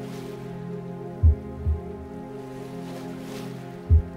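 Singing-bowl meditation music: a steady drone of layered ringing tones. A soft, low, heartbeat-like double thump comes about a second in, and another thump comes right at the end.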